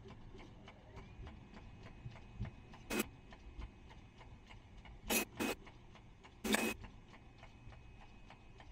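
Plastic cap compression moulding machine with an 18-cavity rotary turret running at production speed, about 12,000 caps an hour: a steady fast ticking, broken by four short loud bursts of noise, one about three seconds in, two close together a little after five seconds, and a slightly longer one at about six and a half seconds.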